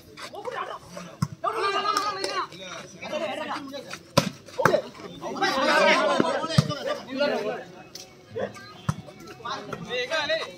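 Volleyball rally: sharp slaps of hands and arms striking the ball, a handful of hits spread through the stretch, under loud shouting from players and onlookers that peaks about two seconds in and again around six seconds in.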